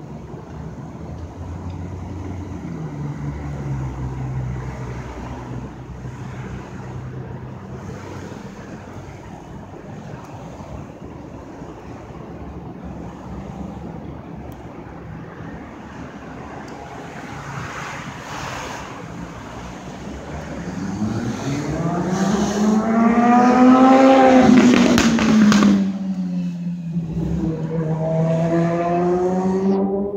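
Street traffic, with a motor vehicle's engine accelerating past: its pitch climbs to the loudest point about three-quarters of the way through, then drops as it shifts gear and carries on pulling away.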